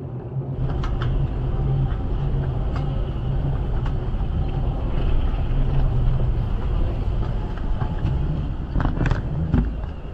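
Steady low rumble of an airport moving walkway under the hum of a large terminal hall, with a few knocks near the end.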